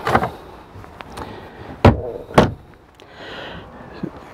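Two wooden overhead cabinet doors thunking shut, one about half a second after the other.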